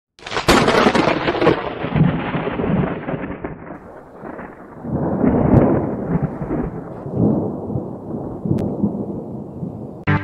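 Thunder: a sharp crack about half a second in, then rolling rumbles that swell up again several times and slowly die away.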